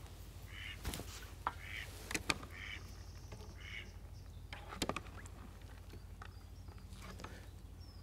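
Faint ducks quacking, a run of about six short calls in the first half, with a few sharp clicks in between.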